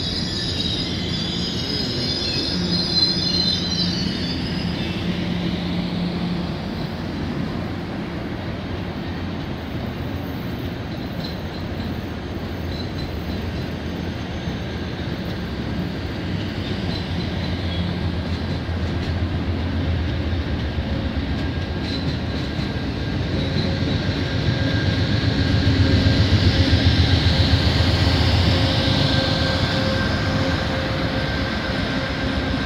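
Amtrak passenger train rolling slowly by, its wheels squealing on the rails for the first few seconds, then a steady rumble of cars over the track. Near the end the Genesis diesel locomotive's engine grows louder as it draws level.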